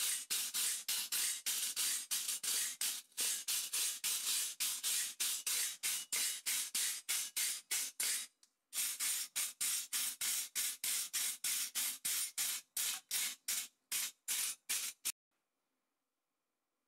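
A hand brush scrubbed quickly back and forth over a porous copper coral piece, about four scratchy strokes a second. There is one short break a little past halfway, and the strokes stop about a second before the end.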